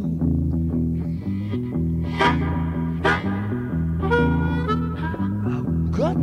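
Blues harmonica playing short phrases with notes that bend down in pitch, over a steady repeating bass line and guitar, in a 1969 blues-rock recording.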